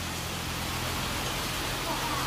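Steady background hiss with a faint low hum underneath, even in level throughout.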